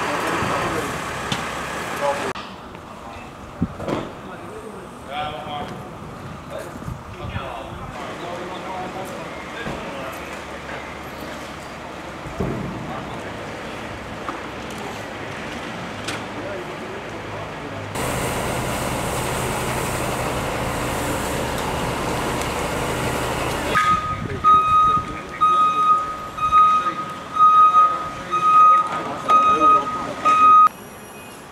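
Voices and street noise across several cuts, then for the last six seconds a loud electronic beep at one steady pitch, repeating in short pulses about twice a second.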